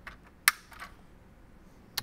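A yellow plastic retaining clip snapping onto a mounting post of a plastic dash kit: one sharp click about half a second in, followed by faint handling of the plastic.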